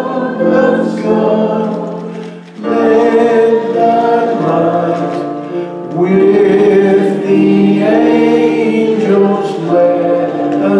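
A congregation singing a slow hymn together in long held notes, phrase by phrase, with a brief breath about two and a half seconds in and a new phrase starting about six seconds in.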